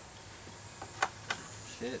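Steady high-pitched chirring of insects, with two sharp clicks about a third of a second apart near the middle.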